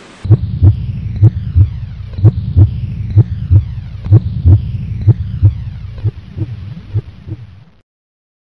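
Heartbeat sound effect: double thumps about once a second over a steady low hum, with high falling glides repeating alongside. It cuts off suddenly near the end.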